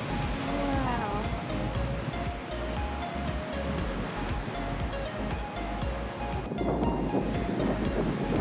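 Background instrumental music with surf breaking on a beach underneath, the surf noise growing louder about two-thirds of the way through.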